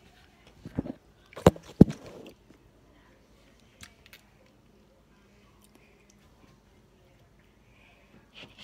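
Handling noise from a phone recording: rubbing and a few sharp knocks, the two loudest close together about a second and a half in, as the phone is picked up and set back down. Two faint clicks follow near the middle.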